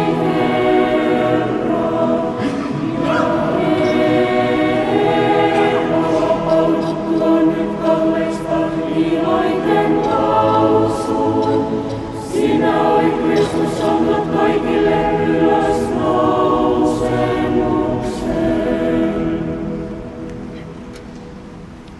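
Choir singing Orthodox church music unaccompanied, in long held chords; it fades out near the end.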